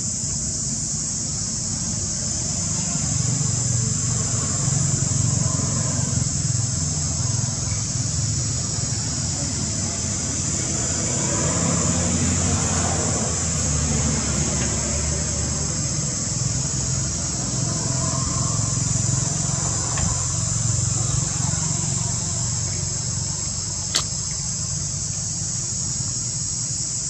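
Outdoor ambience: a steady, high-pitched insect drone over a low rumble, with a single sharp click near the end.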